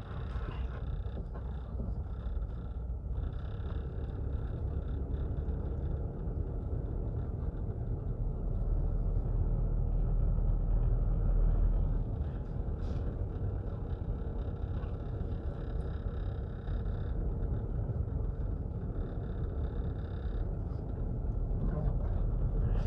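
A car driving along a town street, heard from inside the cabin: a steady low rumble of engine and road noise, a little louder around the middle.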